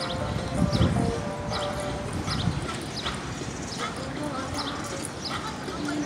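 Open-air crowd sound of people talking, with music playing for a group dance and short high bird chirps repeating about twice a second.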